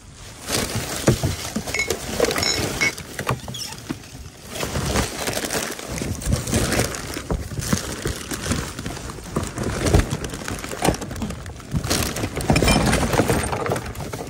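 Plastic trash bags rustling and crinkling as they are handled and shifted inside a dumpster, with a few sharp knocks from the contents.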